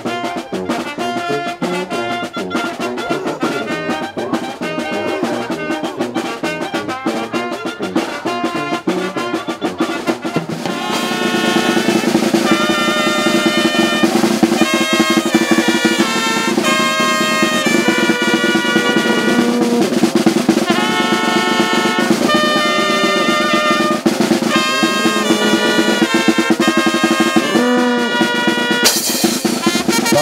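Oaxacan brass band playing a dance tune: a snare drum rolling steadily under clarinet and brass melody, with bass drum and cymbal. About a third of the way in the full band comes in louder with sustained horn lines.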